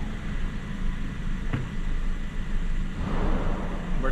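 Steady low rumble of a motor vehicle running, with a single sharp click about one and a half seconds in and a short hiss near the end.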